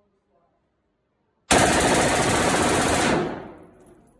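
A Sig Sauer 5.56 rifle firing one full-auto burst of about a second and a half, starting suddenly about a second and a half in. The shots run together into one loud burst, with a reverberant tail from the indoor range fading out after it stops.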